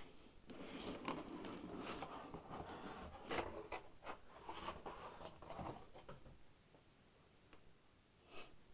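Cardboard guitar box being opened: the lid scrapes and rustles against the box for about six seconds, with a few sharper scrapes, then the sound fades out.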